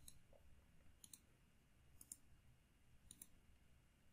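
Faint computer mouse clicks, about one a second, over near silence.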